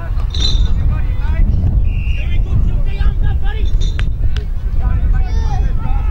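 Distant shouts and calls of footballers and onlookers across the ground, over heavy wind rumble on the microphone, with a single sharp knock about four seconds in.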